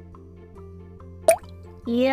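Quiet backing music for a children's song, with one short, rising, water-drop-like 'bloop' sound effect about a second and a quarter in.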